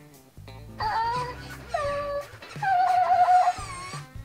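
Hatchimals WOW Llalacorn interactive toy's electronic voice whimpering and wailing through its small speaker in three whiny calls, the last long and wavering. It is the toy's crying mode, which is switched off by holding two spots on it for three seconds.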